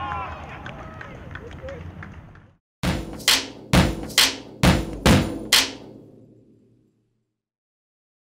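Outro logo sting: about seven sharp percussive hits, roughly two a second, each ringing briefly, then dying away to silence. Before it, faint voices and field sound fade out.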